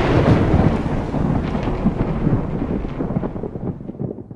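Rolling thunder rumble with irregular crackles, fading slowly and dying away near the end.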